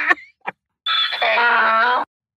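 A man's voice laughing: a short breathy burst, then a drawn-out pitched vocal sound about a second long that cuts off abruptly.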